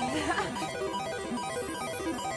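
Game-show music cue playing while a picture roulette cycles through photos, the sound of a random pick in progress.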